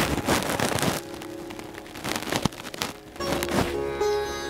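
Sitar music plays in the background under the rustle and crackle of tussar silk saree fabric being handled, loudest in the first second.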